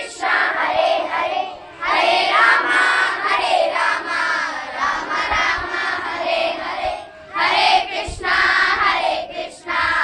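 A group of young girls singing a devotional chant together in unison, the phrases broken by short pauses about two seconds and seven seconds in.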